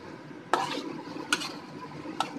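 A metal spoon stirring thick, creamy chicken curry in a wok, with two sharp knocks of the spoon against the pan, about half a second and a second and a half in.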